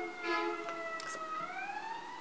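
Emergency vehicle siren wailing: one slow tone that falls and then turns and rises again about a second and a half in.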